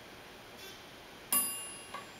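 Elevator arrival chime: a single bell-like ding, a little past halfway, that rings and fades. It signals the ThyssenKrupp service elevator car arriving at the floor.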